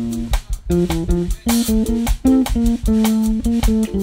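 Electric bass guitar playing a melodic solo line of quick plucked notes in its upper register, with drum kit cymbals keeping time behind it, in a live jazz quartet.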